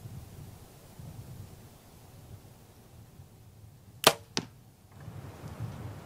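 Compound bow shot: a sharp crack as the string is released about four seconds in, followed about a third of a second later by a quieter thwack of the arrow striking the target.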